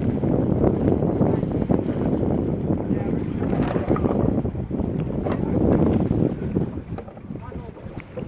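Wind rumbling on the microphone over open water, with boat and water sounds beneath it; it eases off near the end.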